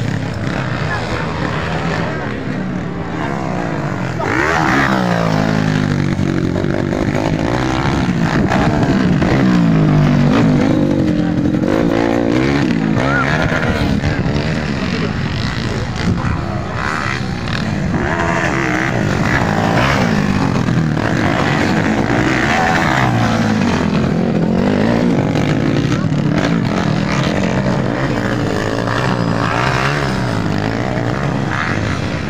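Motocross bike engines revving up and down over and over, the pitch rising and falling in repeated sweeps.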